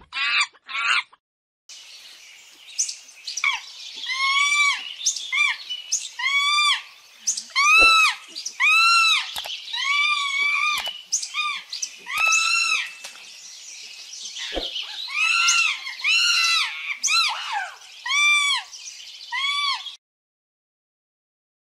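A monkey calling: a long run of high-pitched squealing calls, each rising and then falling in pitch and lasting under a second, given in quick bunches with short gaps between them.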